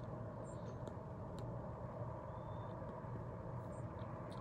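Faint, steady outdoor background noise with a few brief, faint high chirps and ticks.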